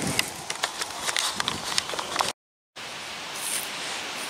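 Irregular clicks, knocks and rustles of a handheld camera being carried along, with footfalls, stopping abruptly a little past halfway; after a brief gap of silence, a steady hiss of wind on the microphone.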